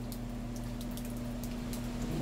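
Carrier central air conditioner's outdoor condenser unit running with a steady low hum.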